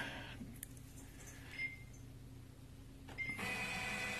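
HP LaserJet M2727nf multifunction printer: two short high beeps from its control panel keys, then about three seconds in its machinery starts up with a steady whir and a faint high whine as it begins a copy run.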